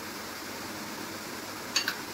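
Steady hiss from pots cooking on lit gas burners, with one short clink of a utensil against a dish near the end.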